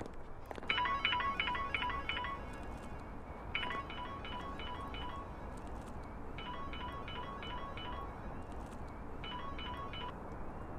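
A mobile phone ringtone: four bursts of quick electronic beeps, repeating about every three seconds, over a low steady background rumble.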